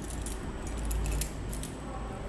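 A bunch of keys jangling, with light metallic clinks throughout and one sharper click about a second in, over a low rumble.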